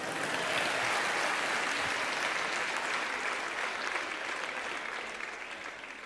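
Audience applauding, the clapping fading gradually toward the end.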